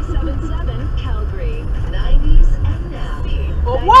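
Steady low road and engine rumble heard from inside a moving car, with a faint voice in the background. The driver shouts "Whoa!" sharply at the very end as another car cuts in.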